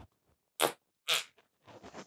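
Two short squirts as a plastic bottle of acrylic craft paint is squeezed onto a palette, about half a second apart.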